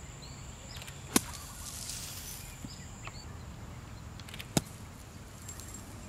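Two golf shots played out of sand bunkers, each a single sharp club strike, about three and a half seconds apart.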